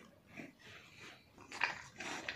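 A small dog eating scraps off paving stones: faint chewing and mouth noises, louder near the end.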